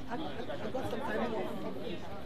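Chatter of a crowd: many people talking at once, with voices overlapping continuously.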